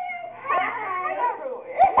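Young women's voices in excited, high-pitched squeals and cries with pitch that swoops up and down, with a few low knocks near the end.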